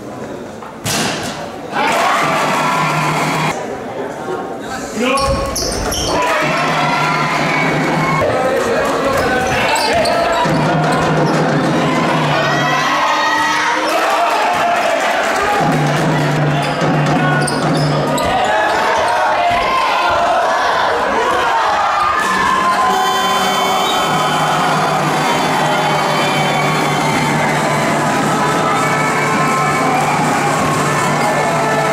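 Basketball game in a gym: a ball bouncing on the hardwood court, with spectators' voices and shouts echoing through the hall.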